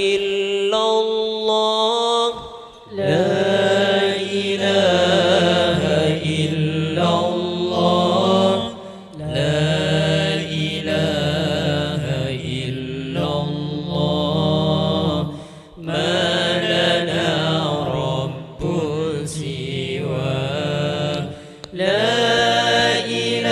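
Male voices chanting a sholawat vocal introduction: a lead voice sings long, ornamented phrases, and about three seconds in a group of voices joins with a held low note beneath it. The phrases last about six seconds each, with short breaks for breath between them.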